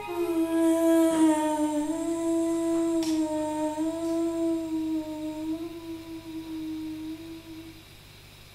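A woman's voice holding one long closing note, wavering slightly in pitch and fading out shortly before the end, with almost nothing else sounding.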